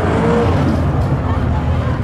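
Drag-racing Fox-body Mustangs' engines running loud at the starting line during a burnout, with a deep steady rumble.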